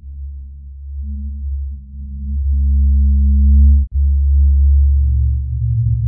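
Loud, low electronic drone: a deep steady bass tone with short steady higher tones starting and stopping above it, dropping out for an instant just before four seconds in.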